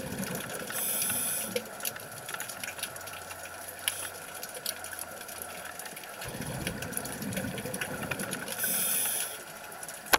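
Scuba breathing through a regulator underwater: a rumble of exhaled bubbles, then a short hiss of inhalation about a second in, a quieter stretch, then bubbles again past the middle and another hiss near the end. Faint scattered clicks run throughout.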